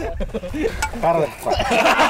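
Several men laughing loudly in short, pitched, bleat-like bursts.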